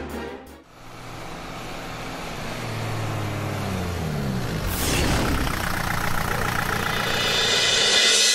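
A car going by: its engine note rises as it nears, then drops about five seconds in as it passes. A hiss swells louder toward the end.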